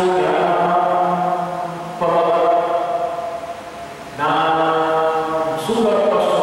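A priest's solo liturgical chant at Mass, sung into a microphone: long phrases held mostly on one steady reciting pitch, with short breaths between them about two and four seconds in.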